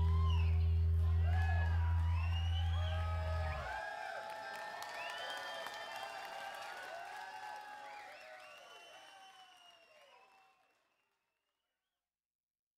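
A rock band's final sustained chord, with a low bass note, rings out and stops abruptly about four seconds in. An audience cheers and whoops over it, then the crowd noise fades away.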